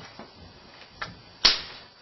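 A single sharp smack about one and a half seconds in, with a fainter click about half a second before it.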